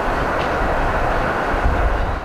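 Steady rumbling, rushing noise of a train passing on the railway line.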